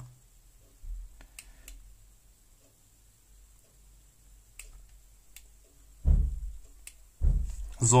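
Hand soldering on a cable joint: a few faint sharp clicks and light handling noise as solder wire and iron are worked at the joint, then two dull thumps about a second apart near the end.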